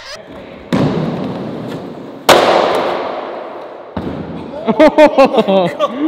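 A skateboarder falling, the board and body slamming onto a concrete floor: two heavy thuds, the second one louder, each followed by a long fading rumble. Laughter breaks out near the end.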